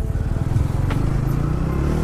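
TVS Ronin's single-cylinder engine pulling away from low speed, its note rising a little as the bike accelerates, with one sharp click about a second in.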